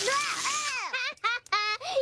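An animated child's voice cries out in wavering yelps as a garden hose sprays him, followed by a girl's short bursts of laughter near the end.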